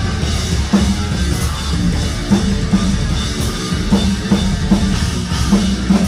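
Progressive metalcore band playing live through a club PA: heavy distorted electric guitars, bass guitar and a full drum kit, with hard accented hits every second or so.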